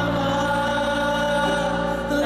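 Live musical-theatre music: singing voices holding a steady chord over the accompaniment.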